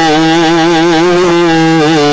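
A man's voice holding one long chanted note, its pitch wavering and ornamented in a melodic recitation style, over a steady low tone.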